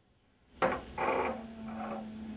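A moment of dead silence, then room sound returns with light clatter of small glass odour bottles being handled and set on a table, over a steady low hum.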